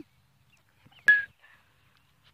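A single sharp knock about a second in, followed by a brief ringing tone.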